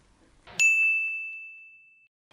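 A single bright bell-like ding, an edited-in sound effect marking the switch to a new section title card. It sets in about half a second in with a brief swell and rings on one clear pitch, fading away over about a second and a half.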